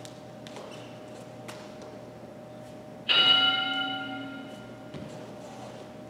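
A single bell-like strike about halfway through, ringing with several clear tones and fading away over about a second and a half: an interval timer's bell marking the end of the exercise interval.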